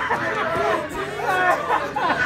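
Several men talking over one another in a crowded room, a babble of loud, overlapping voices.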